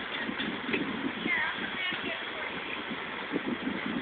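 Faint, distant voices over steady outdoor background noise, with a few irregular soft thumps.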